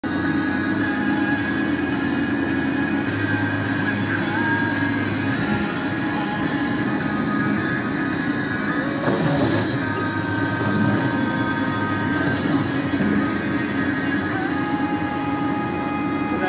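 Steady road and engine noise inside a moving car's cabin, with thin, sustained high tones held over it that shift pitch slightly a few times.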